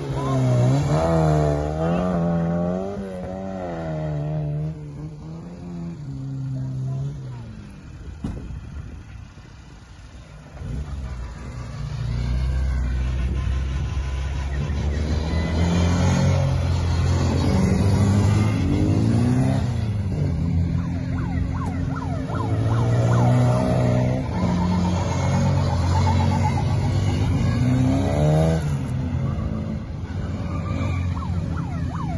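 Classic Mini cars driven past in turn around a roundabout, their engines revving up and easing off, with the pitch rising and falling. There is a quieter lull shortly before the middle, then louder, repeated revving through the second half.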